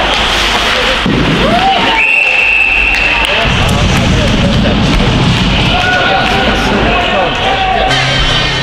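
Live ice hockey in an indoor rink: voices shouting, sticks and puck knocking, under a steady hall rumble. Near the middle, a single high, steady whistle blast of about a second and a half, the kind a referee blows to stop play.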